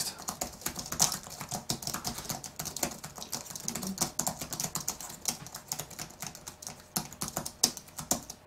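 Rapid, irregular typing on a computer keyboard, the keys clicking several times a second.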